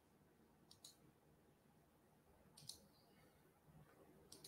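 Near silence with a few faint, sharp clicks: a pair just under a second in and another pair about two and a half seconds in.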